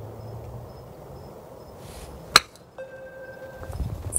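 A golf club striking a ball on a short chip shot off a turf hitting mat: one sharp click a little past halfway.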